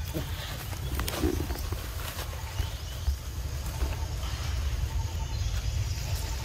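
Outdoor ambience: a steady, fluctuating low rumble, like wind on the microphone, with a few light clicks and rustles.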